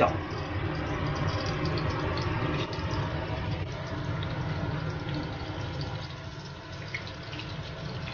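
Slices of su ji (pressed tofu roll) frying in a thin layer of hot oil in a wok: a steady sizzle.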